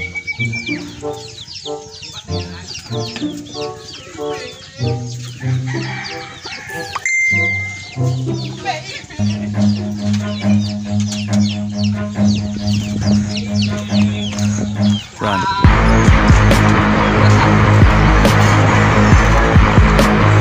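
Chickens clucking in a yard, heard over background music with a stepped melody. A little after three-quarters of the way through, a loud steady rush of noise suddenly comes in under the music.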